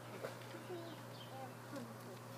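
Hummingbird moth hovering, its wings making a steady low buzzing hum.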